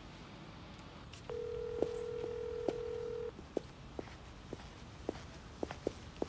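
A telephone dial tone, one steady tone, sounds for about two seconds starting a second in. A series of short clicks runs through and after it, like the handset's keys being pressed.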